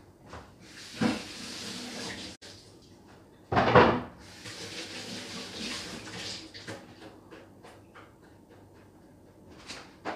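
Off-camera kitchen handling noises: a stretch of rustling about a second in, a loud clunk about three and a half seconds in, then more rustling and a scatter of light clicks. The blender is not running.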